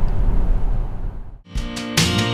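Steady road and tyre noise inside a moving Tesla Model S at motorway speed, fading out; about one and a half seconds in, background music with guitar begins.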